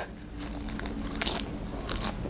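Close-up eating sounds: a crisp lettuce leaf bitten and chewed, with two sharp crunches, one a little past the middle and one near the end.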